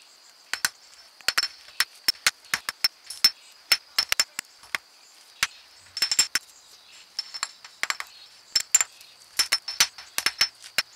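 Light, irregular taps of a small hammer on the rock crust encasing an iron Civil War artillery shell, chipping the concretion off. The sharp clicks come in quick clusters with short pauses between them.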